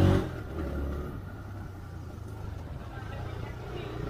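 Motorcycle engine running at low speed in slow street traffic, a steady low hum under road and traffic noise, louder for the first second or so.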